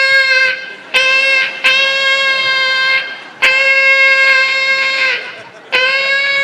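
One-note horn blasts, like a New Year's noisemaker, all at the same pitch. Several long blasts and one short one follow each other with brief gaps, each starting and stopping sharply, and a new blast begins near the end.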